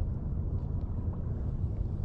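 Low, steady rumble of wind on the microphone by open water, with no other distinct event.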